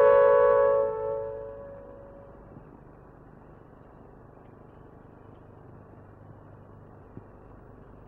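Final chord of a short electronic synthesizer sting, struck at the start and fading out over about two seconds, leaving a faint steady hiss.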